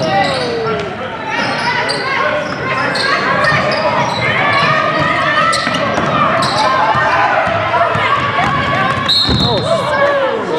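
Basketball game sounds in a gym: a basketball bouncing on the hardwood floor amid steady, indistinct overlapping voices of players and spectators calling out, echoing in the large hall.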